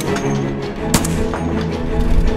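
A single shot from a Barrett M107A1 12.7 mm (.50-calibre) anti-materiel rifle about a second in, over background music.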